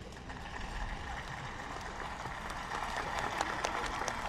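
Scattered applause from a small outdoor crowd, sparse at first and thickening in the second half.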